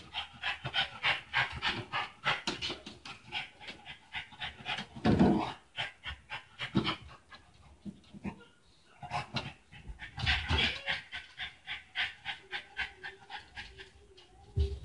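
Dog panting rapidly, about five breaths a second, with a couple of louder, deeper breaths along the way.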